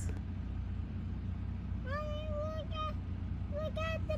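A steady low rumble, with a high, drawn-out voice-like call lasting about a second from about two seconds in, and shorter ones near the end.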